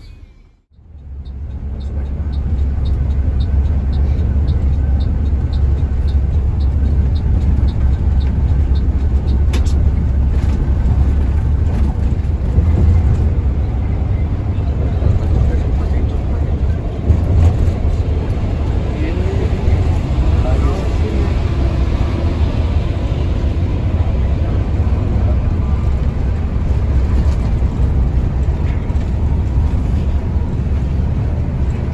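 Inside the cabin of a Mercedes-Benz OH 1526 NG bus on the move, a loud, steady low engine and road rumble. For the first several seconds there is a light ticking, about three ticks a second.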